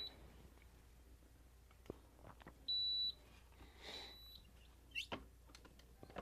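Digital swingweight machine beeping as it takes a racket's measurement: one clear high beep of under half a second about three seconds in, then a fainter, shorter one about a second later. A few light clicks and knocks come from the racket being handled on the machine.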